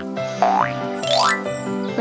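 Cartoon background music with two quick sound effects that sweep upward in pitch, one about half a second in and one just after a second in.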